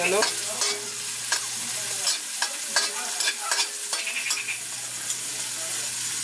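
Garlic and onion sizzling in hot oil in a metal wok, with a metal spatula scraping and knocking against the pan at short, uneven intervals as they are stirred.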